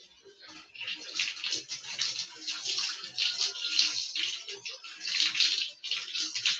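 Water poured from a plastic dipper over a person during a bucket bath, splashing unevenly onto the body and a concrete floor. It starts a little under a second in, with a brief lull a bit past the middle.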